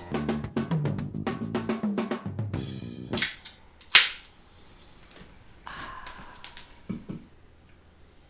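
A short drum fill, a quick run of snare and drum strikes, then the tab of an aluminium sparkling-water can snapping open: two sharp cracks a little under a second apart, the second the loudest. Fainter sipping sounds follow near the end.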